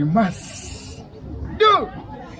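Men's voices exclaiming: a short voiced sound, then a drawn-out hiss of about half a second, then a high cry falling in pitch near the end.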